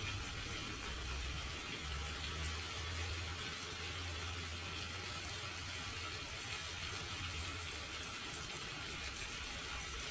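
Shakshuka of eggs and tomato sauce simmering in a frying pan on a gas stove: a steady, even hiss, with a low hum underneath that is strongest from about two seconds in until about eight.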